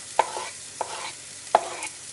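A slotted spatula scraping chopped onion, garlic and ginger off a wooden cutting board into a frying pan of hot oil, knocking sharply three times against the board and pan, over a faint sizzle of the onions hitting the oil.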